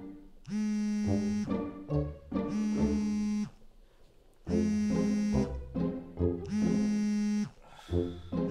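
Smartphone vibrating for an incoming call: a steady buzz in one-second pulses, one starting about every two seconds, four times.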